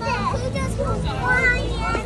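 Young children's voices as they play and chatter, with a steady low hum underneath.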